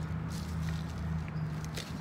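A steady low hum, with scattered light ticks and rustles over it.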